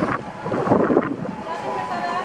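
Children's voices in the background with wind noise on the microphone, loudest between about half a second and a second in.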